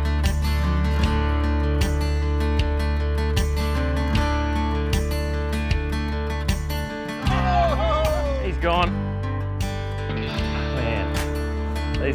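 Background music with a steady beat and held tones. A voice comes in over it in the second half.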